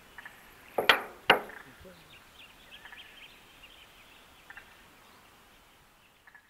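Male musk duck display: two loud, sharp knocks about half a second apart, about a second in, with a faint high thin whistle over them. Faint high ticks follow in the background.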